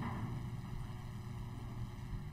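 Steady low background hum and hiss of open microphones, with no distinct events.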